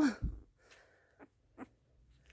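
A quiet pause with a soft low bump just after the start, then two faint short ticks about a second in: handling noise around a newborn puppy on a fleece blanket.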